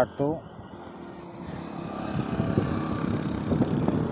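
A motorcycle and a loaded truck approaching along the road, their engines and tyres growing steadily louder.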